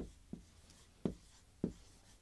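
Dry-erase marker writing on a whiteboard: four short, separate strokes as a word is written.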